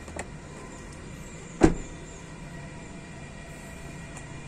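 The front door of a Mitsubishi Xpander being shut: one loud, sharp thump about one and a half seconds in, after a faint click near the start.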